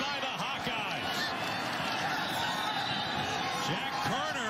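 Football stadium crowd noise: a steady wash of many voices, with scattered individual shouts standing out.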